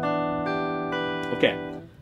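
Electric guitar (Ibanez AZES40) playing an E minor 7 chord at the 7th fret, its notes picked one after another and left ringing together. The chord is cut off a little before the end.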